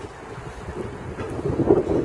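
Wind buffeting the microphone: a low, uneven rumble that grows louder near the end.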